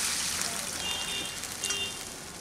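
Water poured into a hot pan of rice fried in oil and spices, the splashing sizzle fading as the pan fills.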